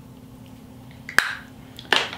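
Two sharp clicks of makeup products being handled on a hard surface, one about a second in and another near the end, over a faint steady hum.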